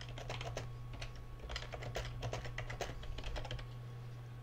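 Typing on a computer keyboard: a steady run of quick keystrokes over a low, steady background hum.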